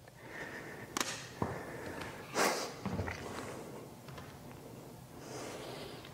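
Quiet room with a few light clicks and knocks, and one short hiss about two and a half seconds in.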